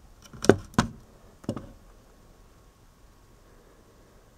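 Three short knocks and clicks of handling, about half a second, just under a second and a second and a half in, as the homemade CRT tester and camera are moved.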